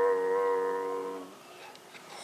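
A person's voice holding one long chanted note on a vowel, fading out a little over a second in.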